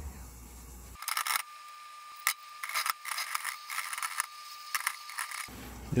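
Water coming to a boil in a stainless steel frying pan on a gas burner: irregular small pops and rattles from about a second in until shortly before the end.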